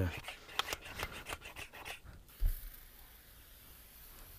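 Hands rubbing and handling a plastic cover, with a run of short scratchy rubs and clicks over the first two seconds and a single dull thump about halfway through, then only a faint hiss.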